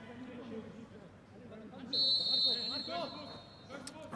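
Players' voices shouting across an empty stadium, with a referee's whistle blown once about two seconds in, held for about a second before it fades.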